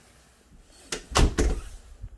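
A closet door being shut: three sharp knocks in quick succession about a second in.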